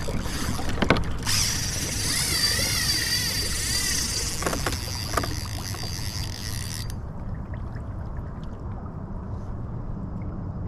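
Spinning reel whirring for about five seconds with a wavering pitch, then stopping abruptly, as a hooked fish on a trolled crankbait is fought. Underneath, a steady low rush of water and wind as the kayak moves under an electric trolling motor, with a few light clicks.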